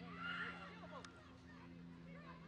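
Several voices shouting and calling over one another during a rugby scrum, with no clear words, over a steady low hum; a single sharp click about a second in.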